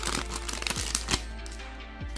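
Background music, with a few sharp crinkles and clicks in the first second or so as a foil Pokémon TCG booster pack is opened and its cards handled.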